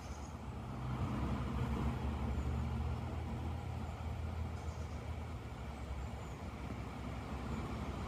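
Low, steady engine rumble of a motor vehicle, growing a little louder about a second in and easing off after about five seconds.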